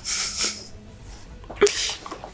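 A man's two short, breathy exhales, stifled laughs or snorts through the nose, about a second and a half apart, the second with a small mouth click.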